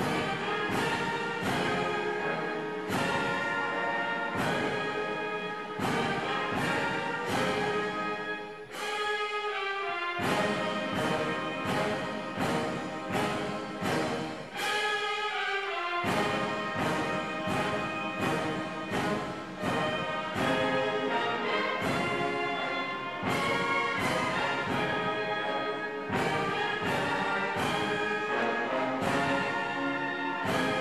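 Uniformed wind band of trumpets, saxophone and tuba playing a slow piece with a steady beat, the low brass dropping out briefly twice.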